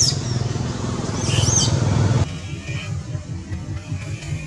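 Short high-pitched animal calls, each rising and falling quickly, once at the start and twice about a second and a half in, over a steady low hum. A little past halfway the sound cuts abruptly to background music with a low beat.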